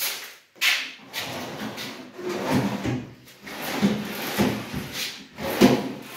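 Aluminium kitchen cabinet drawers and doors being handled, pulled open and pushed shut: a run of knocks, clacks and sliding noises, with the sharpest knocks right at the start and about a second before the end.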